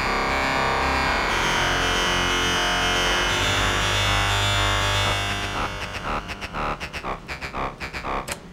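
MDA DX10 software FM synthesizer holding a note that is dense with overtones, with a low tone coming in about three seconds in. Over the last couple of seconds the note fades out unevenly in a long release tail.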